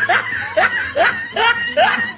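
Laughter: a run of short, rising, yelping syllables, about two a second.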